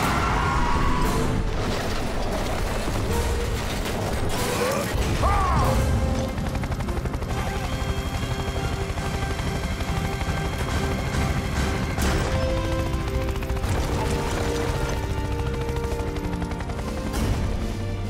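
Cartoon action soundtrack: a sudden loud crash of sound effects at the start, with booms and mechanical clanking, under dramatic music that settles into sustained notes after about eight seconds.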